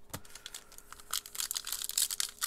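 Trading-card pack wrapper crinkling and tearing as it is opened by hand: a run of small crackles that grows denser about a second in.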